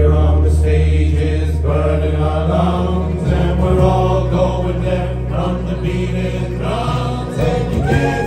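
A live acoustic-guitar ensemble playing a song, with held low bass notes under the guitars and several men's voices singing together.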